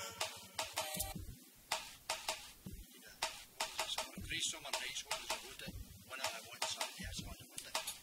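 A song cuts off at the start, followed by a run of short clicks and knocks with indistinct low voices, like equipment being handled in a small studio.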